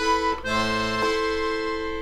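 D/G melodeon (two-row button accordion) playing a short chord, then a longer held chord from about half a second in, with its low bass note dropping out about a second in.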